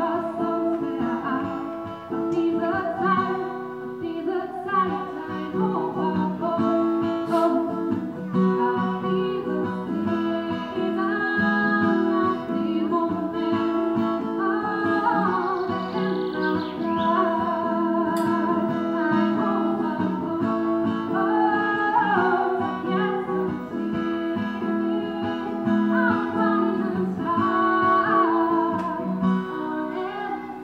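A woman singing to her own guitar accompaniment, both played through a small amplifier with a microphone; the melody has long held notes that slide between pitches over steady chords.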